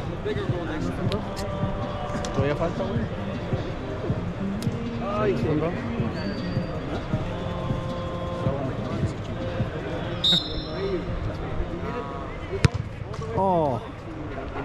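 Thuds of a football being kicked and bouncing on artificial turf, with one sharp kick near the end, among echoing background voices in a large indoor hall.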